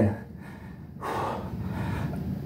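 A man breathing hard between push-up reps, tired from exertion; a long, noisy breath begins about a second in.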